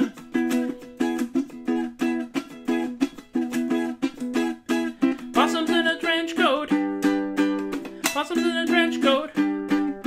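Ukulele strummed in a steady, quick rhythm. A man's voice joins in with a wavering phrase about five seconds in and another near the end.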